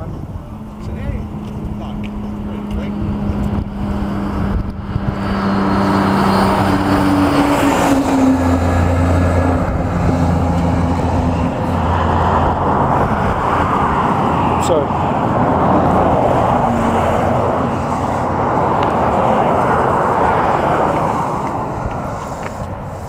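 Motorcycle engines running and idling, a steady engine hum that drops to a lower pitch about eight seconds in, over a wash of noise that grows louder about six seconds in.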